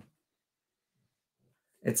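Near silence: room tone in a pause between a man's words, with speech starting again near the end.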